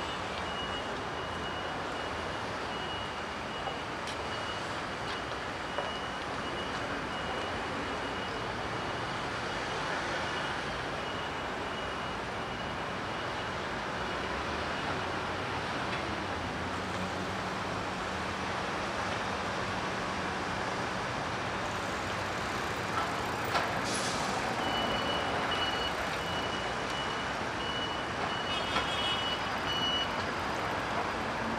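City street traffic noise from passing cars and scooters, with a high-pitched electronic beep repeating through the first half and again in the last few seconds.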